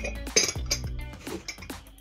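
Ceramic mug and its lid clinking as the mug is picked up and handled: a few light knocks, the loudest about half a second in. Background music plays underneath.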